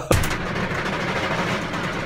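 Steady rushing rumble of a roller coaster ride, with wind on the camera microphone. It starts abruptly at the cut.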